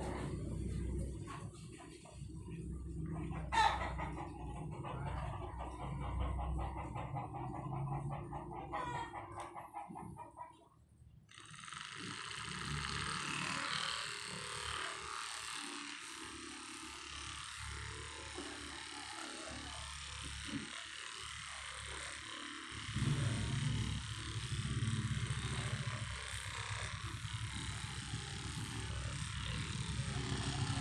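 A handheld percussion massage gun switches on about a third of the way in and runs steadily while pressed against a person's back.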